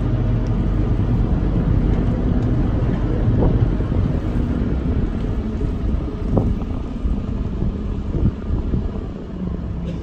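Cruise boat's engine running with a steady low rumble, with wind buffeting the microphone.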